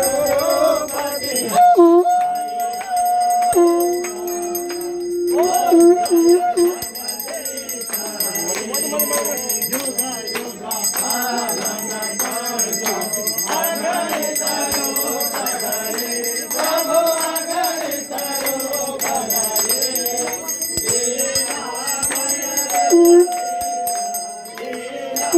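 Puja hand bells ringing continuously with rapid repeated strikes, over voices chanting and singing a devotional hymn amplified through a microphone; a few notes are held for a second or two.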